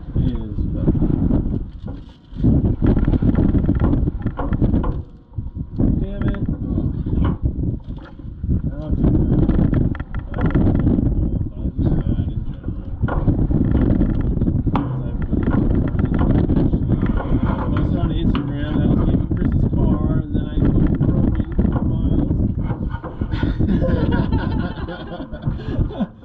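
Off-road desert race car heard from inside the cabin while under way: a loud, rough engine and drivetrain noise with rattling, dipping briefly twice, about two and about five seconds in.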